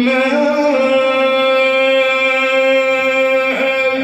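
A man reciting the Quran in melodic tajweed style, holding one long drawn-out note with a brief waver near the end.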